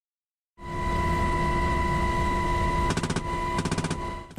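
UH-60 Black Hawk helicopter in flight, heard from the open cabin door: steady engine and rotor noise with a constant high whine, fading in after half a second. Near the end come two short bursts of M240B door-gun fire.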